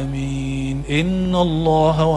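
A man's voice chanting a devotional phrase into a handheld microphone: one long held note, a short break about a second in, then a second note that wavers in a melodic ornament.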